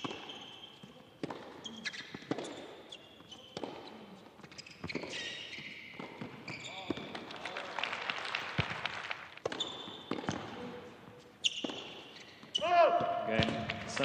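Tennis rally on an indoor hard court: racket strikes and ball bounces knock about a second apart, with shoes squeaking on the court between shots. Near the end a loud shout breaks in as the point ends.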